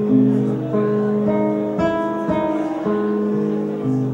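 Solo acoustic guitar played live, held notes ringing, with a woman singing along into the microphone.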